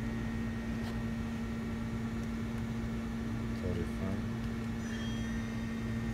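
Mori Seiki MV-40B vertical machining center's spindle running unloaded at about 2,500 RPM: a steady hum with a constant low tone. About five seconds in, a faint higher whine joins as the speed is stepped up toward 3,500 RPM.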